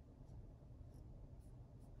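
Faint brushing of a sauce-wet cotton swab drawn across paper: a few brief strokes over a low, steady room hum.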